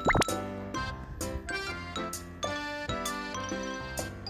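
Light, cute background music of bell-like notes over a steady beat. Right at the start, a short rising "plop" sound effect cuts in and is the loudest moment.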